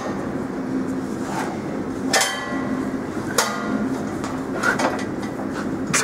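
Wire mesh welding machine running with a steady hum. It gives two sharp metallic clanks that ring on, about two and three and a half seconds in, with lighter clicks between.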